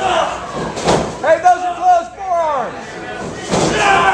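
Wrestling in a ring: a sharp hit about a second in and another near the end, with a long shouted voice between them that falls in pitch as it fades.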